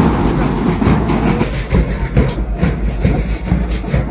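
Marching band side drums beaten with sticks in a quick, steady rhythm of sharp strikes.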